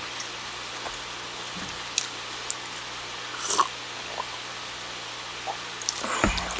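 Steady room background hiss with a faint low hum, broken by a few small clicks and one brief louder noise about three and a half seconds in.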